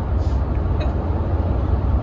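Cabin noise of a Ram pickup truck cruising at highway speed: a steady low rumble of engine, tyres and road.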